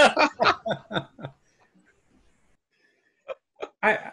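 Men laughing over a video call in a run of short bursts that die away within the first second or so. After a pause, two brief sounds come just before a voice starts again at the end.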